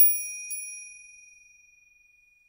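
A bell chime sound effect struck twice, about half a second apart, ringing out with a high clear tone that fades away over about a second and a half. It is used as the break between one story and the next.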